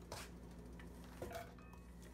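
Near quiet: a low steady hum with a couple of faint knocks, one just after the start and one just past a second in.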